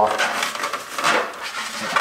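Stiff foam being pried and broken out of a Jeep Wrangler JK's taillight cavity by hand: noisy scraping and rustling with a few sharper strokes, about a second apart.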